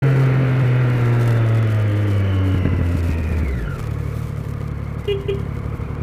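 Motorcycle engine heard from on board, its revs falling steadily as the bike slows down, then settling into a lower, steady running from about four seconds in.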